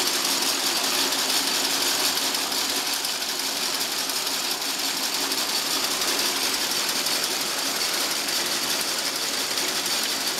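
Fiber-mill processing machinery running steadily: a continuous, even mechanical noise with no pauses.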